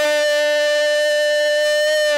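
A radio football commentator's long, held goal cry, one sustained shouted 'Gooool' at a single steady pitch, greeting a penalty kick that has just gone in.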